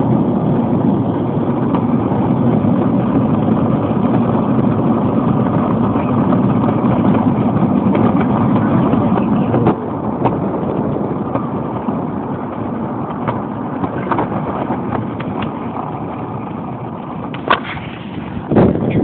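Hard roller-skate and scooter wheels of a homemade wooden cart rumbling steadily over pavement as it rolls downhill, with a few small clicks and knocks. The rumble drops a step about ten seconds in and grows quieter toward the end.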